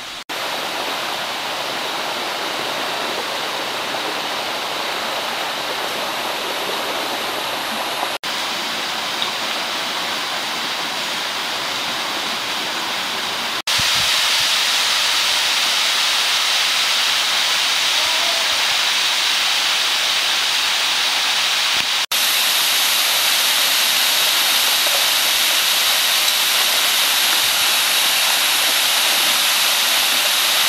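Steady rush of a mountain stream and waterfall, broken by a few abrupt cuts. About 14 seconds in it turns louder and hissier: the roar of the 20 m Umisawa Ōtaki falls.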